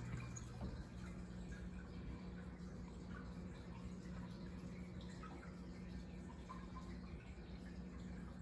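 Faint aquarium pump and filter running: a low steady hum with light trickling and dripping of water.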